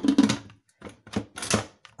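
Stainless-steel lid of an electric pressure cooker being set onto the pot and closed, a series of clicks and knocks with the loudest about a second and a half in.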